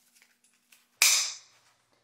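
Faint handling rustle, then about a second in a single sharp snap-like noise that fades over half a second as the lid of a nylon flashbang pouch is closed over a handheld radio.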